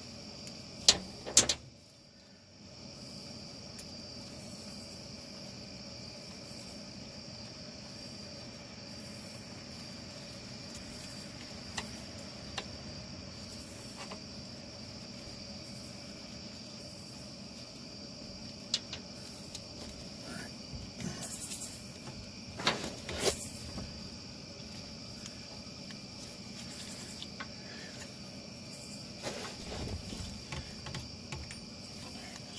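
Scattered sharp metallic clicks and clinks of hand tools being handled while working under a car, over a steady high-pitched background whine.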